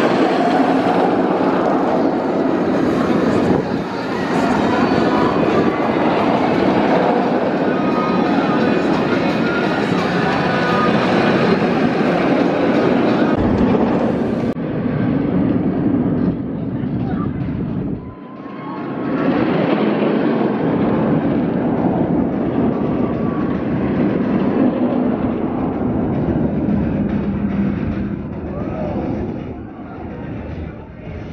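Steel roller coaster trains running along the track, a dense, loud rumble with riders' voices and screams over it. The sound changes abruptly about halfway through, where a B&M stand-up coaster's train is passing overhead.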